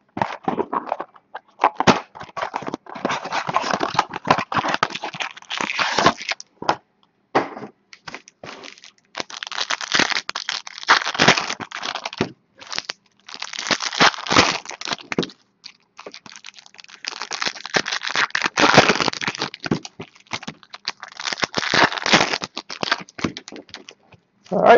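Foil wrappers of trading-card packs crinkling and tearing as they are opened by hand, in crackly bursts with short pauses between.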